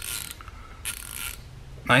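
Short Snap-on 3/8-inch F80-type hand ratchet being worked back and forth. Its fine-toothed pawl gives two short runs of rapid, even clicks, one at the start and one about a second in, a clean ratcheting sound.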